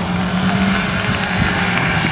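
Classic Lada sedan's four-cylinder engine running at steady revs as the car drives through a gymkhana cone course, holding an even pitch.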